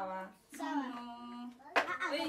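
Voices, one holding a long level note, then one sharp hand clap just before the end.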